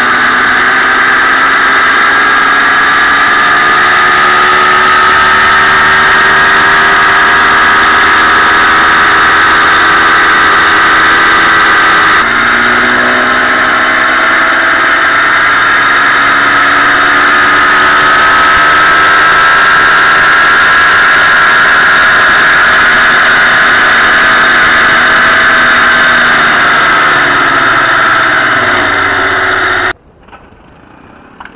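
1956 Johnson 15 hp two-stroke twin outboard motor running fast under way, loud and steady over the rush of its spray. Its pitch drifts slowly and falls away near the end as it slows.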